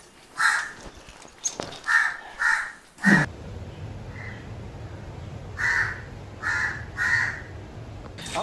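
Crows cawing: short single caws about half a second to a second apart, four in the first three seconds and three more near the end. A steady low hum sits under the later caws from about three seconds in.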